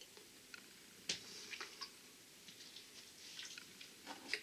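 Faint mouth clicks and small smacks of someone tasting hot sauce off a wooden spoon, with the sharpest click about a second in, over an otherwise near-silent room.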